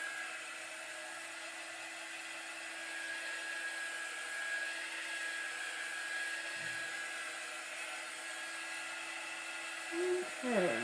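Handheld craft heat tool running steadily, its fan blowing hot air with an even hiss and a steady motor whine, drying freshly applied chalk paste on a stenciled sign.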